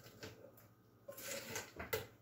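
Small spatula scraping chopped vegetables out of a steel mixing bowl into a blender jar, with light clatter and a few knocks of utensil and bowl, the loudest near the end.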